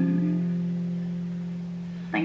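Acoustic guitar's final strummed chord ringing out and slowly fading away at the end of a song.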